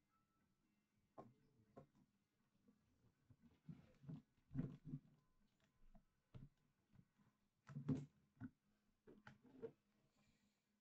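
Near silence: room tone with a few faint, irregular taps and knocks.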